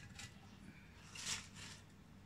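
Faint rustle of shredded cabbage and gloved hands as the cabbage is pressed down into a glass jar, with one short, slightly louder rustle a little over a second in.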